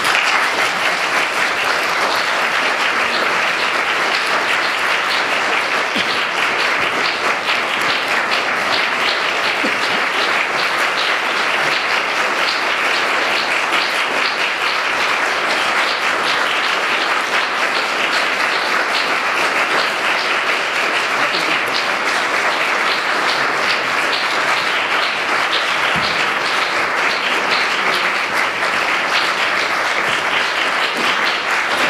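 A live audience applauding: many hands clapping together at a steady, even level, breaking out suddenly and never letting up.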